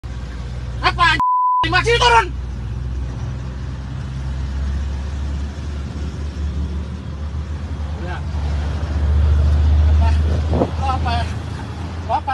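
Low, steady rumble of car engines and traffic heard from inside a car cabin. Over it a man's loud voice comes through the side window, and a short steady censor bleep covers one of his words about a second in.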